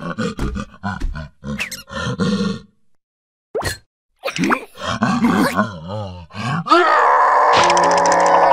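Cartoon creature voices: a run of short grunts and groans, a pause, then wavering, pitch-bending vocal sounds, cut off about seven seconds in by a loud, sustained musical sting.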